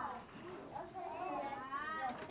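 A faint, high-pitched child's voice, its pitch gliding up and down, as in a soft murmur or hum.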